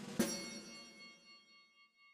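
A single bright, bell-like chime struck just after the start, ringing and fading away over about a second and a half as the cartoon's background music ends.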